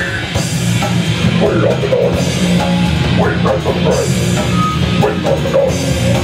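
Live heavy metal band playing loud and without pause: distorted electric guitars, bass guitar and a drum kit.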